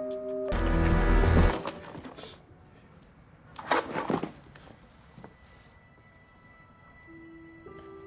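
Dramatic background music with held notes, broken by a loud, deep hit about half a second in and a shorter noisy burst around four seconds; a faint high held tone lingers afterwards.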